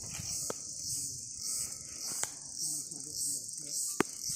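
High-pitched insect chorus, chirping in pulses about twice a second, with faint voices talking in the background and two sharp clicks.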